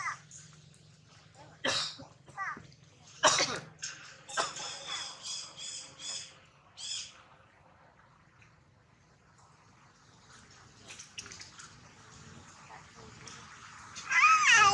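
Macaques calling: a few sharp squeaks in the first few seconds, then a run of about six quick high chirps.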